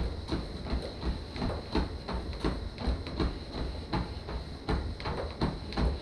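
Footfalls of a slow walk on a motorized treadmill belt, evenly spaced at roughly three a second, over the treadmill's steady low running rumble and a thin steady high whine.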